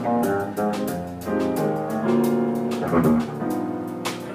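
Small jazz combo playing live: electric bass and grand piano, with regular cymbal strokes from the drum kit keeping time.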